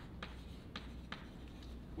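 Chalk writing on a blackboard: three short, sharp chalk strokes in the first second or so, then the writing stops.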